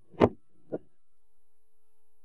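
Two short thumps about half a second apart, the first much louder, followed by a faint steady tone.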